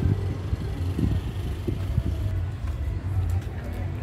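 Low, steady outdoor rumble with a few soft knocks about one and two seconds in.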